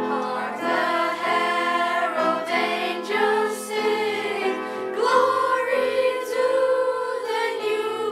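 A children's choir singing a song with piano accompaniment, starting abruptly.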